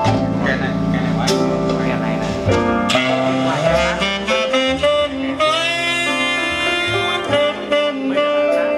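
Jazz music with a saxophone lead, played through a Tannoy Prestige Gold Reference loudspeaker.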